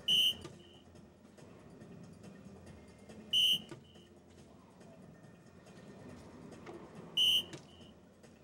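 Soft-tip DARTSLIVE electronic dartboard sounding its hit tone three times, about three and a half seconds apart, once for each dart scoring a single 18. Each is a short, high, bright electronic beep followed by a quieter quick repeat.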